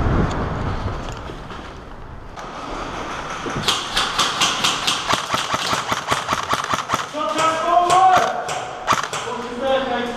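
A rapid run of sharp cracks from airsoft guns firing, about six a second, starting a few seconds in. Men's voices shout over it near the end.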